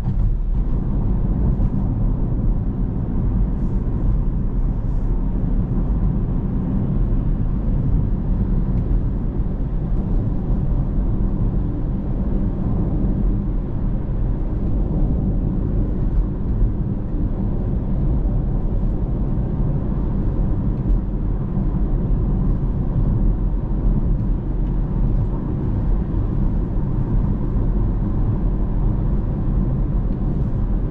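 Steady low road rumble inside a Tesla electric car's cabin, from the tyres on the highway at about 45 to 50 mph.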